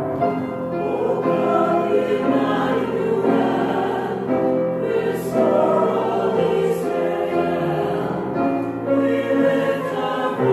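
Mixed church choir of women's and men's voices singing together, sustained and continuous.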